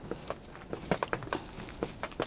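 Gloved hands crumbling a jade plant's old root ball, perlite-rich potting soil breaking loose and pattering into a plastic basin as a string of small, irregular crackles and ticks.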